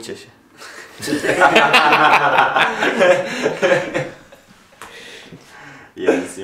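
People laughing hard for about three seconds, starting about a second in, then dying down to quieter chuckles.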